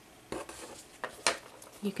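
Light clinks and taps of a paintbrush and water cup being handled, with a few sharp clicks spread over about a second.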